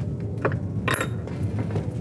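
Metal ring of a Ringing the Bull game clinking against the hook on the wall: two sharp clinks about half a second apart, the second louder with a brief high ring. A steady low hum runs underneath.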